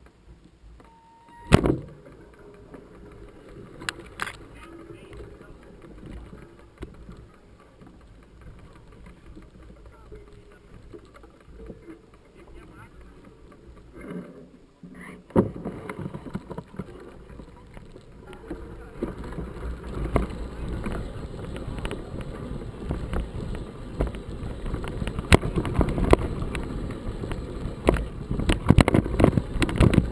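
Mountain bike on a rough dirt trail. A sharp knock comes near the start, then a quieter stretch, and from about halfway a dense clattering rumble of riding over rough ground builds, growing louder toward the end.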